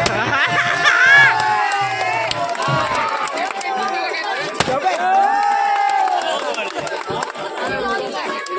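A crowd of people shouting and cheering over one another, with a rising whoop about a second in. A music beat runs underneath for the first few seconds, then drops out. A single sharp crack comes about halfway through.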